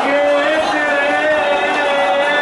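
A voice chanting in long, slowly wavering held notes, typical of a noha lament.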